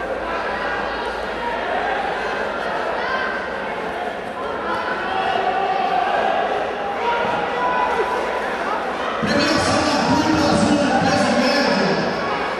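Voices of onlookers echoing in a large sports hall, with no single clear speaker. The voices grow louder about nine seconds in.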